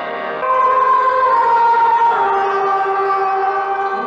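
Background score of sustained, held musical tones that swell louder about half a second in; a high held note drifts slightly and steps down in pitch about two seconds in.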